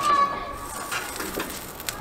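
Marinated lamb skewers sizzling over hot charcoal as their fat drips onto the coals, a steady soft hiss. A single click near the end.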